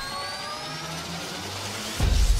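Intro sound-design riser: a rising whoosh with several thin tones gliding slowly upward together, building toward a sudden louder hit at the very end.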